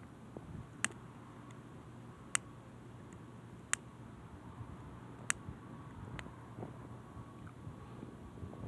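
A handheld lighter being struck again and again to light a cigar in the wind: four sharp clicks about a second and a half apart, then a fainter one. Under them runs a steady low rush of wind.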